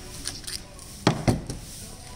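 Two quick knocks about a second in, a quarter second apart, as small metal O2 sensor spacers are handled.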